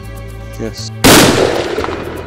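A single rifle shot about a second in: a sharp, loud crack that dies away over most of a second.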